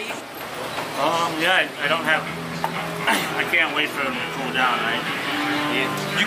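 People talking, voices that the recogniser did not catch as words.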